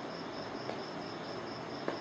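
Insect chirping in an even, high-pitched pulse, about six a second, over faint room hiss.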